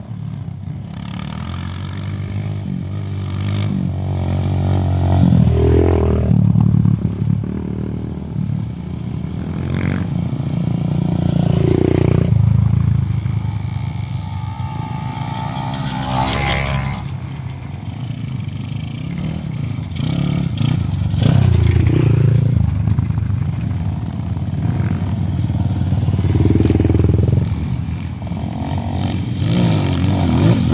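Trail motorcycle engines working hard up a steep hill climb, the revs rising and falling as the throttle is worked, with several swells as bikes come close. A brief sharp noise about halfway through.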